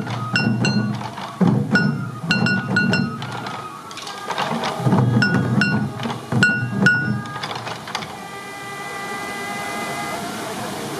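Sansa odori taiko drums struck in a driving rhythm together, mixed with sharp, high ringing strikes. The drumming stops about eight seconds in, leaving a steady held tone.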